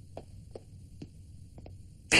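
Faint footsteps, a few soft taps spaced about half a second apart, over a low steady hum.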